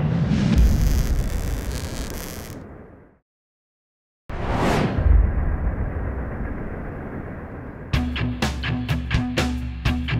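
Show transition sound design: a deep boom that fades away, a second of silence, then a falling swoosh with another low hit, and music with a steady drum beat starting about eight seconds in.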